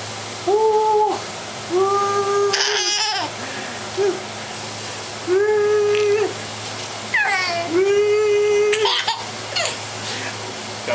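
A baby laughing and letting out four long, level squeals of delight, each about a second long, with short breathy laughs in between.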